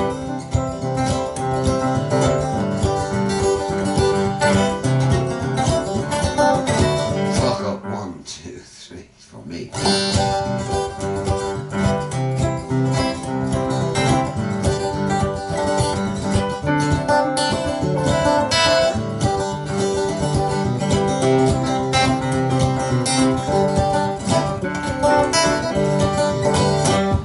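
Acoustic guitar and digital piano playing together, with no singing. The music breaks off almost completely about eight seconds in and starts again about a second and a half later.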